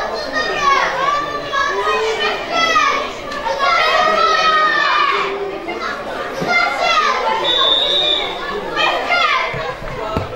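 Young boys' voices shouting and calling out over one another, high-pitched and without a break, with a brief steady high tone about eight seconds in.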